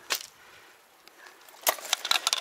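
Small camera bag and selfie stick being handled and set down on rock: a single click near the start, then a quick run of sharp clicks and rattles near the end.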